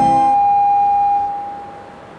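Organ music ending: the lower notes of the final chord stop a moment in, leaving one high note held that fades away about a second and a half in.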